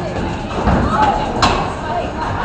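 Bowling balls knocking on a ball return: a dull thud a little under a second in, then a sharp knock about a second and a half in.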